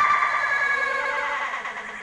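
High-pitched shrieking laughter from several people, fading away over the two seconds.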